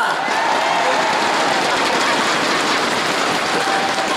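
Audience applauding steadily, with some laughter mixed in.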